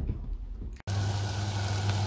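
Diced potatoes frying in a pot on a gas stove: a steady sizzle over a low steady hum, cutting in abruptly about a second in after a faint low rumble.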